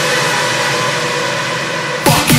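Electronic dance track in a short breakdown: the kick drum and bass drop out, leaving a steady wash of synth noise with a few held tones. The full beat comes back in right at the end.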